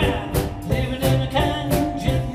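A rock band playing live: a drum kit with regular drum and cymbal hits, a keyboard, and a lead melody line on top.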